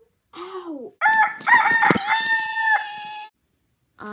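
A girl's voice making a loud, high-pitched, rooster-like call. A short falling hum comes first, then about a second in a held squealing note starts and breaks off suddenly after about two seconds.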